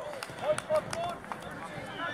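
Teenage footballers calling out in short, high shouts, with a few faint ticks in between.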